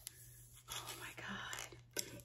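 A woman's faint whispered or breathy voice, about a second long in the middle, with a light click near the end.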